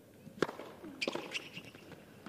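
Tennis racket striking the ball on a serve, a sharp crack about half a second in, followed by further sharper, quieter hits as the ball is returned and the rally goes on.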